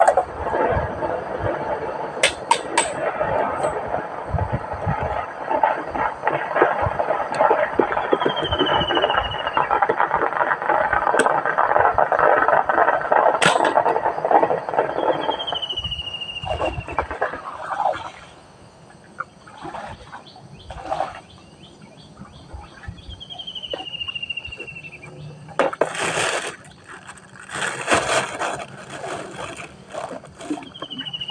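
A steady rushing noise for about the first fifteen seconds, then scattered knocks and clatter. A short descending whistle, like a bird's call, repeats about every seven to eight seconds throughout.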